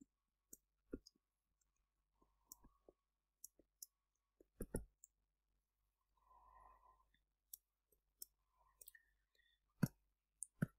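Near silence broken by scattered light clicks, a dozen or so spread unevenly, with the two loudest about halfway through and just before the end.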